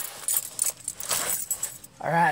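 Keys jangling, with light, irregular metallic clicks.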